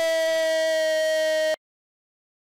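A football commentator's long, drawn-out "goool" cry in Spanish, held loud on one steady note. It cuts off suddenly about a second and a half in.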